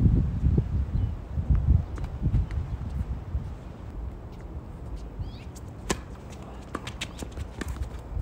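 Tennis ball struck by rackets on a hard court: one sharp hit about six seconds in, then a quicker run of hits and bounces near the end as the rally goes on. A low rumble fills the first couple of seconds.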